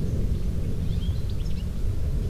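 Low, unsteady rumble of wind buffeting the microphone outdoors, with a few faint high chirps about a second in.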